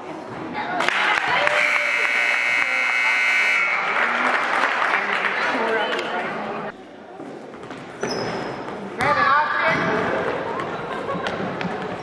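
Gym scoreboard buzzer sounding one steady tone for about two seconds, starting a second or so in, over loud crowd voices in the gym.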